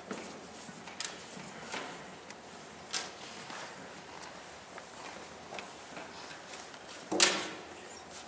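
Scattered small knocks and shuffling noises in a large echoing hall, with one louder knock near the end that rings on briefly in the room.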